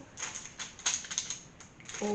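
A quick run of light taps and crinkles, about a second long, from things being handled on the work table.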